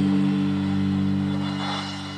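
Electric guitars and bass holding one sustained chord, letting it ring out with no drums, beginning to fade near the end.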